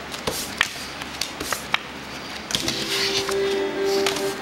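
Playing cards being slapped and slid across a wooden tabletop during a fast card-passing game, giving a string of sharp clicks and taps. About two and a half seconds in, a steady held musical tone comes in.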